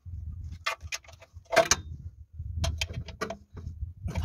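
Socket wrench tightening bolts on a generator frame: a string of irregular metal clicks and knocks, the loudest about a second and a half in, over a low rumble.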